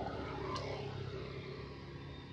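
A motor vehicle's engine humming steadily in the background, with one brief sharp click about half a second in.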